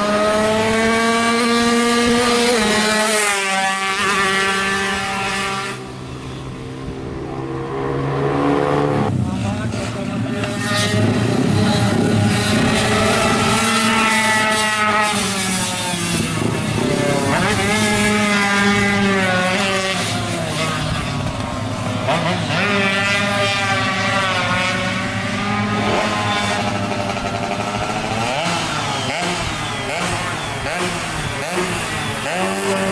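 A race-tuned Yamaha F1ZR two-stroke motorcycle being ridden hard around the circuit. The engine pitch climbs through each gear and drops at the shifts and corners, over and over. It goes quieter about six seconds in and picks up again about three seconds later.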